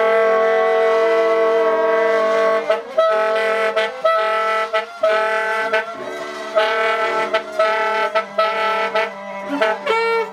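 Free jazz quartet playing: tenor saxophone and trumpet hold long notes together for the first few seconds, then break into short, repeated notes, over a sustained bowed double bass.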